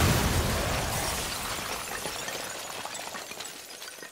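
The tail of a loud crash or explosion-type sound effect, fading steadily away as a noisy wash with scattered small clicks and crackles in the second half.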